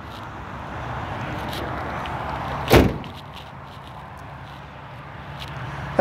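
A single loud slam about three seconds in, over steady outdoor background noise that builds a little before it.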